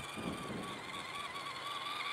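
Electric motor and gear drivetrain of an Axial RC Jeep Cherokee crawler whining steadily at a high pitch as the truck drives past on snow. Soft low bursts come in the first half second.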